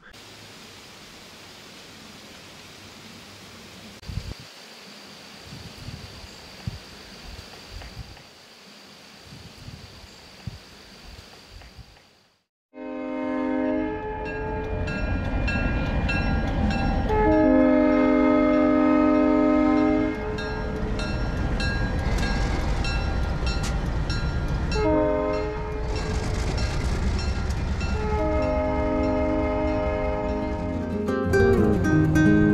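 After a faint stretch of quiet outdoor ambience with a thin steady high tone and light rustles, a diesel passenger locomotive passes a grade crossing, sounding its chord horn in four blasts (long, long, short, long), the standard warning for a crossing. Its engine rumbles underneath and the crossing bell rings rapidly.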